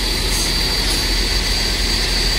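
A heavy diesel recovery truck's engine idling steadily, with a constant high-pitched whine over the rumble.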